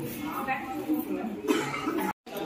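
Indistinct talk among a group of people seated close by, with one short, sudden loud sound about one and a half seconds in.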